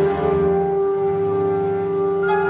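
Chamber ensemble of strings and winds playing a long held note over moving lower string parts.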